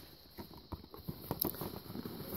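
Cardboard box being opened and handled: faint, irregular scraping and light tapping of cardboard as the flap is pulled and the inner sleeve slides out.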